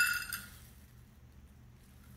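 A metal measuring cup clinks and rings with a few clear high tones, fading out within the first half second. Then near silence.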